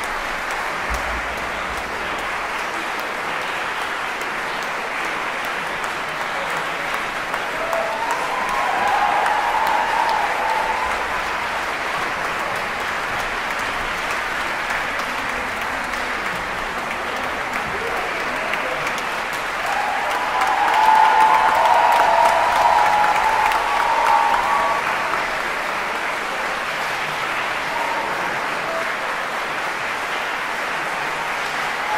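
Concert hall audience applauding steadily, swelling louder twice, about eight seconds in and again around twenty seconds, with voices cheering over the clapping.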